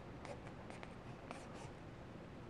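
Faint scratchy rustling, in about five short strokes, of 550 paracord being pushed and pulled through a woven bracelet with a thin metal fid.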